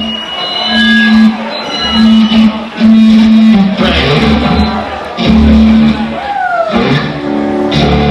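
Electric guitars and bass played loudly through a club PA between songs: a held low note that cuts in and out, loose higher notes, and a guitar note sliding down in pitch near the end.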